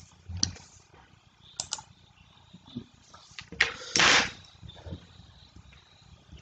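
Scattered light clicks and soft knocks of handling at a computer desk, with a short breathy rush about four seconds in.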